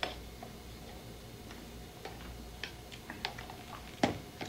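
Scattered light clicks and taps of a cup and spoon being handled and drunk from, a few sharp ticks bunching up in the second half, over a low steady studio hum.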